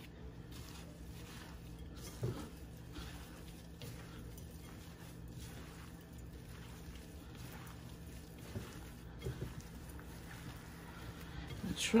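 Gloved hands kneading and squishing a ground beef meatloaf mixture in a bowl: faint, soft, irregular squelches, a little louder a couple of times.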